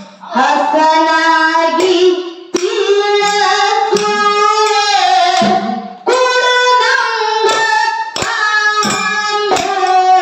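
A woman singing a Kannada dollina pada folk song into a microphone, in long held phrases with a slight waver in pitch and short breaks about two and a half and six seconds in. A few faint percussion strikes are heard now and then.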